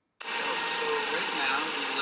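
GCC laser engraver running while it engraves foam: a loud, steady rushing machine noise that comes in abruptly just after the start.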